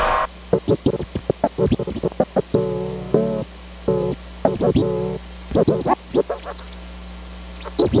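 Turntable scratching: a sample on a record pushed back and forth by hand and chopped with the mixer's crossfader into many short cut-up stabs, some gliding up or down in pitch, with a few notes let ring for about half a second. There is no drum beat behind it, only a faint steady hum.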